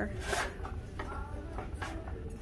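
Handling noise from decor pieces being moved on a store shelf: two short rustling scrapes, one just after the start and one near the end, over faint background voices.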